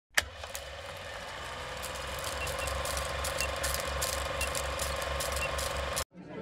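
Old film projector sound effect: a sharp click, then a steady mechanical clatter with a fast low rhythmic pulse, film crackle and pops, and faint short beeps about once a second.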